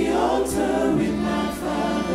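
Gospel worship song: several voices singing together over a live band.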